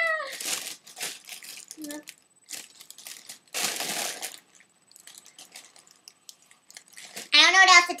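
A foil helium balloon crinkling as it is handled and squeezed, with a hiss of about a second around the middle as helium is breathed in from it, then more light crinkling.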